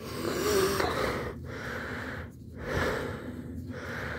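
A man breathing heavily, several breaths about a second apart. He is straining while lying under the car, working the engine oil drain plug loose by hand.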